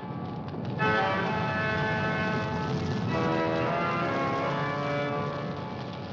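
Dramatic trailer score of tolling bells ringing over a low sustained drone, with fresh strikes about a second in and again near the middle.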